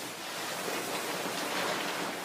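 A large cloth sheet rustling as it is pulled down off a wall: a steady rush of noise that swells near the end.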